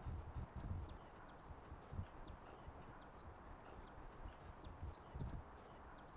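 Faint location background ambience: a steady hiss with soft low thumps now and then and a few short, high chirps.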